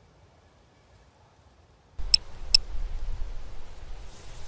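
Near silence for about two seconds. Then a low rumble comes in suddenly, with two short, sharp, high clicks about half a second apart.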